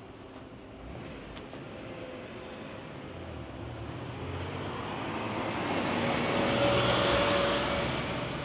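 A car passing close by on the street: its road noise builds steadily, peaks about seven seconds in, then falls away.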